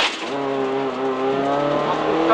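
Renault Clio Williams rally car's 2.0-litre four-cylinder engine heard from inside the cabin, running on with its note rising a little and then holding steady.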